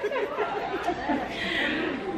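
Indistinct background chatter of several overlapping voices.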